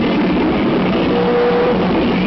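Electric guitar played live through heavy distortion, a dense noisy wash of sound with a single note held for about half a second past the middle.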